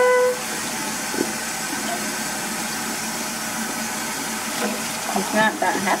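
Kitchen faucet running steadily into a stainless-steel sink, the stream splashing over a small plastic bottle held under it.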